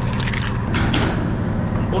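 A bunch of keys jangling, with a few sharp metal clicks as a metal door is locked, over a low steady engine hum.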